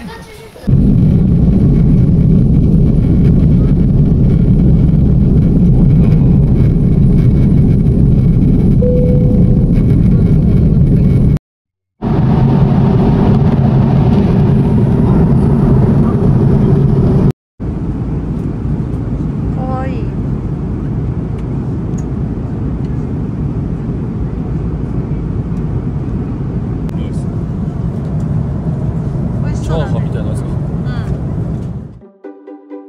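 Jet airliner cabin noise: a loud, steady rumble from the engines and airflow. It cuts out briefly twice, and after the second break it runs noticeably quieter.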